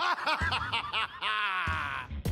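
A man laughing: a quick run of short bursts, then one longer drawn-out laugh about a second in.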